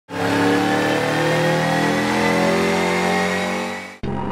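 Subaru Legacy GT's turbocharged flat-four engine running hard on a chassis dyno, a loud, steady high-rev note that fades out near the end.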